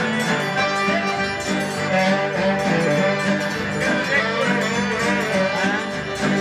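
A Cajun band playing a tune together: fiddles and accordion over strummed guitars, the music going on steadily throughout.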